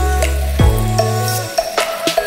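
Background music with sustained notes over a bass line and a drum hit about once a second; the bass note changes partway through.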